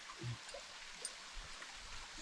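Quiet outdoor background hiss with a brief faint low sound about a quarter second in and a few faint ticks later.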